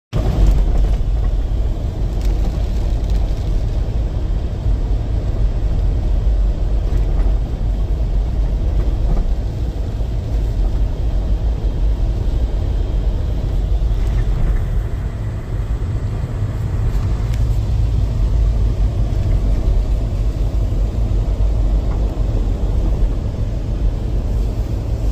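Steady low rumble of a vehicle driving on a wet, slushy road, heard inside the cabin: engine and tyre noise.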